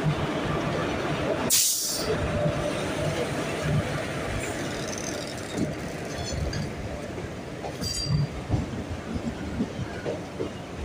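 A train running on the rails close by, with a steady rumble and rattle of wheels and coaches. About one and a half seconds in there is a brief break with a short burst of hiss.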